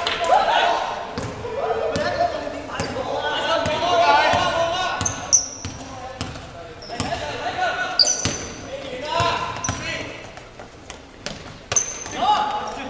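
Basketball bouncing on a hardwood court in a large, echoing gym, with players' voices calling out during play.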